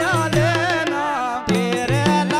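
Indian folk devotional music: a wavering melody line over mridang drum strokes whose low tones step up and down, with nagadiya and banjo in the ensemble.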